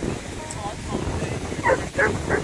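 A dog barking, most clearly near the end, over wind on the microphone and surf.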